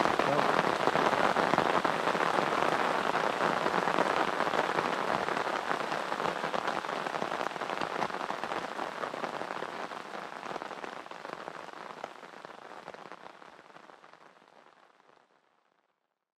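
Heavy downpour of rain on a river's surface: a steady hiss scattered with the ticks of single drops, fading out gradually over the second half to silence.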